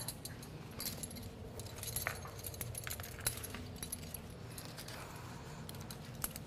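Metal clips and carabiners on resistance-band handles and foot straps clinking as the straps are handled and fitted around the feet: a scattering of small, light clicks.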